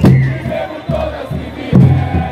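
Football supporters chanting together in the stands to bass drums, with a loud drum stroke at the start and another near the end.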